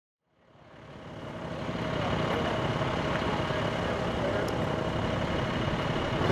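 Small motorcycles idling, fading in over the first two seconds to a steady engine hum with background talk.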